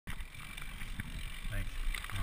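Mountain bike rolling over a dirt trail: a steady low rumble of tyres and wind on the camera microphone, with scattered clicks and rattles from the bike.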